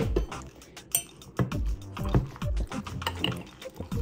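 Freshly microwaved soft-plastic bait remelt in a glass jar crackling and popping as trapped water boils off into air bubbles, which is normal for reheated bait that holds water. A sharp clink against the glass comes about a second in.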